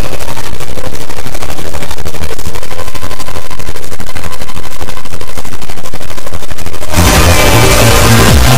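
Speedcore track: a very loud, extremely fast run of distorted drum hits that sounds like machine-gun fire. The full beat with heavy bass comes back in about seven seconds in.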